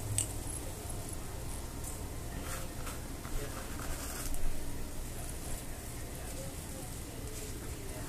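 Dried rosemary being scooped and sprinkled into a glass jar, with faint scattered crackles and light taps of the dry herbs and the jar being handled, over a steady low hum.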